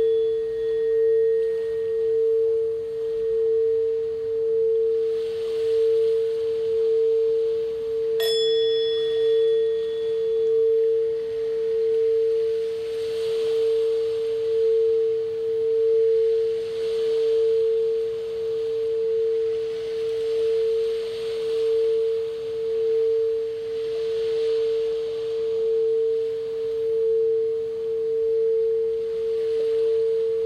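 Quartz crystal singing bowl played by rubbing a mallet around its rim, giving one continuous pure hum that gently swells and fades about once a second. About eight seconds in, a bowl is struck once and a brighter, higher ring fades out over a couple of seconds.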